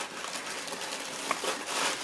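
Tissue paper rustling and crinkling as hands pull it back inside a cardboard shoebox, with a brief tick a little past a second in.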